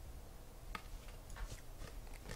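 Trading cards being handled and shuffled from one hand to the other, making a few faint, short clicks and flicks of card edges, the clearest one almost a second in.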